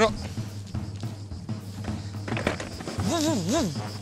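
Background music with a drum beat and a fast, steady high tick. Near the end, a brief wordless voice sound with a wavering, up-and-down pitch.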